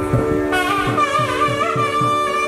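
Carnatic temple music: a wavering double-reed melody of the nadaswaram kind enters about half a second in, over a steady drone and a regular drum beat of about three strokes a second.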